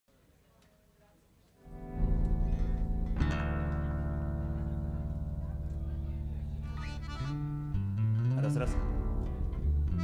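Instruments being tuned before a set: after a second and a half of near quiet, a bass instrument sounds a long low held note, changes to another about three seconds in, then slides up and down in pitch near the end.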